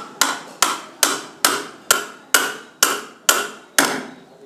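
Hammer blows on the end of a metal pipe, pressing a new shaft into a wall fan's rotor. The blows come at a steady pace of about two a second, nine in all, and each rings briefly with a metallic tone.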